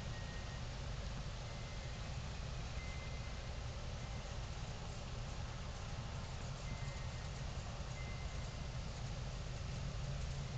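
Steady outdoor background noise: a low rumble under an even hiss, with a few faint, short high tones here and there.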